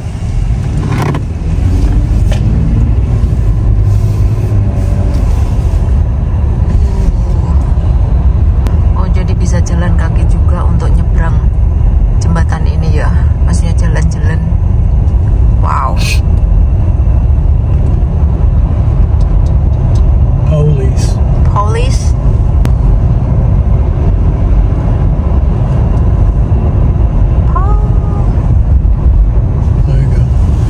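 Road and engine noise inside the cabin of a moving car: a steady low rumble from the tyres and engine at driving speed.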